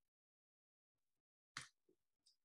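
Near silence, broken once by a brief soft click about three-quarters of the way through.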